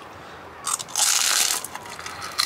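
A crisp, freshly fried puffed snack ball being bitten and crunched, with a crunching burst that starts just under a second in and lasts about a second.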